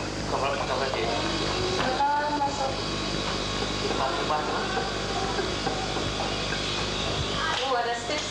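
Indistinct voices talking, with no clear words, over a steady low hum and hiss.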